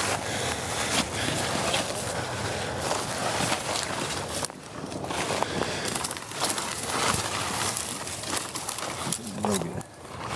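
Footsteps and legs brushing through tall dry grass and brush, a continuous crackling rustle with a brief lull about halfway through.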